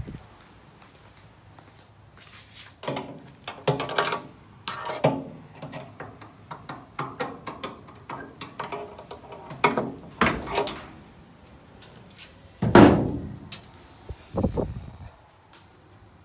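Knocks and rattles of a key working the trunk lock of a 1969 Dodge Super Bee, then a loud clunk about three-quarters of the way through as the latch lets go and the steel trunk lid opens, followed by a lighter thud.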